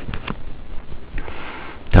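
A few computer keyboard keystrokes clicking at the start, then a short intake of breath through the nose before speaking.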